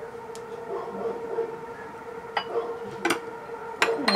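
A few light clinks of a metal spoon against a small glass jar as it scoops, over a steady background hum.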